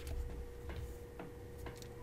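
A few faint clicks, about four spread across two seconds, over a faint steady hum and low room noise.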